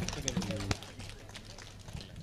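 Faint talking away from the microphone with scattered light clicks, over a low steady hum.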